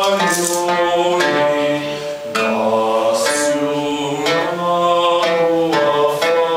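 Mixed choir singing a slow medieval folk chant in long held notes that step from one pitch to the next, with light instrumental accompaniment.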